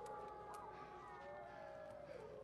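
A pack of gray wolves howling in chorus: several long, overlapping howls that slowly slide down in pitch, heard faintly.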